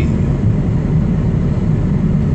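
Heavy diesel truck engine running at low speed: a steady low rumble.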